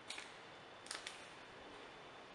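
Quiet room tone with faint short clicks, a pair just after the start and another pair about a second in.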